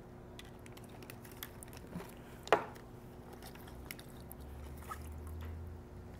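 Faint handling noises of a plastic coral shipping bag with water in it: scattered soft clicks and small wet squishes, over a steady low room hum.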